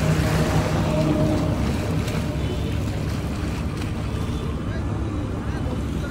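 River waves washing and lapping against a grassy, rocky bank, heard as a steady rush. Strong wind rumbles on the microphone underneath.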